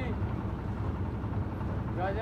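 Engine of a concrete mixer machine running steadily, a low hum.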